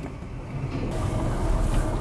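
Low rumble of a moving freight train, mixed with wind on the microphone, growing louder about half a second in.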